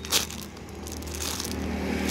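Clear plastic wrapper crinkling as the squishy toy inside it is squeezed by hand, with a sharp crackle near the start. Under it a motorbike engine runs steadily, its hum growing a little louder.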